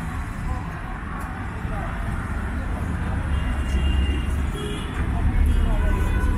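Low, steady rumble of road traffic passing close by, with indistinct voices in the background.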